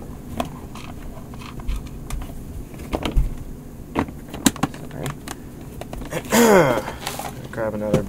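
Scattered light clicks and taps from handling a breadboard, jumper wires and the camera on a workbench, with a brief voice sound about six seconds in.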